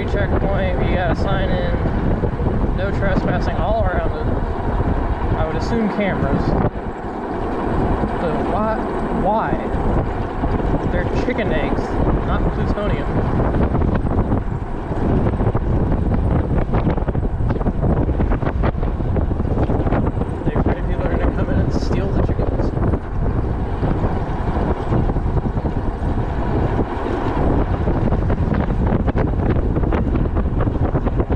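Wind buffeting the microphone while riding an e-bike: a loud, steady rumble, with faint wavering tones in about the first ten seconds.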